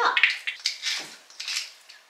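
Wooden pepper mill grinding white pepper: a run of short, rasping grinds, about three a second.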